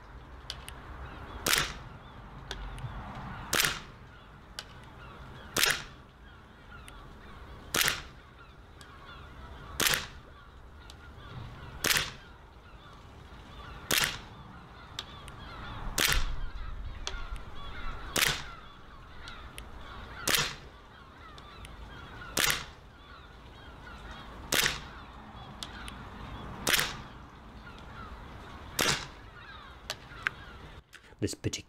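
WE G17 gas blowback airsoft pistol firing single shots at an even pace, about one every two seconds, fourteen in all.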